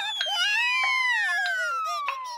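Cartoon falling sound effect: a long whistle sliding steadily down in pitch as the cartoon mouse tumbles, over the mouse's quavering wail, which sags lower as it falls.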